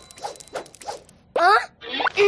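A cartoon toddler's short, loud, rising whine of frustration, preceded by a few soft quick taps.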